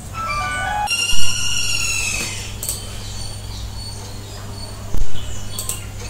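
A short electronic jingle: a few quick stepped notes, then a held chiming tone that slowly falls, over a steady low hum. A single loud knock sounds about five seconds in.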